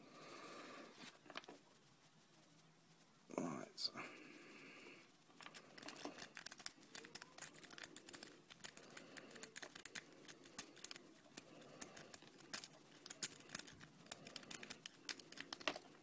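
A Bogota rake being worked in a five-pin brass lock cylinder, its pins giving light, fast, irregular clicking from about five seconds in as the rake scrubs them to set.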